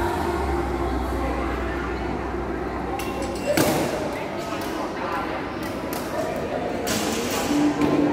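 Gym ambience: background music and indistinct voices, with a heavy thud of equipment about three and a half seconds in and a few more knocks near the end.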